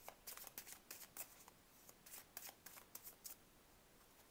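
A tarot deck being shuffled overhand, cards sliding and snapping against each other in a quick, uneven run of soft clicks that thins out and stops a little after three seconds in.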